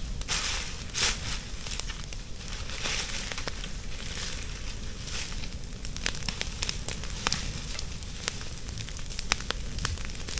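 Dry leaf litter and palm fronds burning with frequent sharp crackles and pops. A burning palm-leaf torch is dragged through the leaves, with a few brief rushing swishes in the first few seconds.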